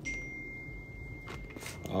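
Quiet handling of plastic sunglasses and a cloth drawstring pouch, with a couple of soft clicks and rustles in the second half. A faint, steady, high-pitched tone runs under it and stops near the end.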